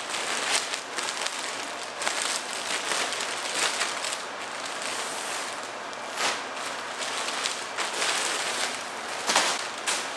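Grey plastic poly mailer bag crinkling and crackling as it is shaken, handled and pulled open, with irregular sharp crackles throughout.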